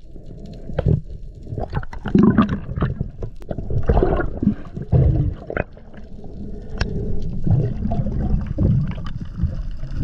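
Underwater water noise heard through a camera housing: irregular gurgling surges of moving water, mostly low and muffled, with a few sharp clicks.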